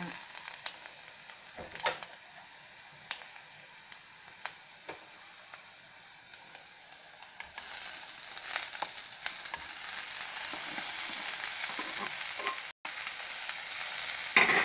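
Oil and onion tempering sizzling quietly in a pan, with a few light taps. About halfway through, chopped cluster beans are tipped into the hot oil and the sizzle turns much louder and steadier.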